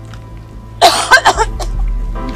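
A woman coughing hard, three harsh coughs in quick succession about a second in, over soft background music.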